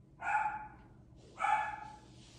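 Pet dogs barking: two barks about a second apart.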